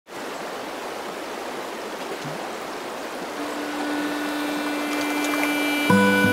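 Rushing mountain river water, a steady even rush. About halfway through a single low note comes in and holds, and music with plucked notes starts just before the end.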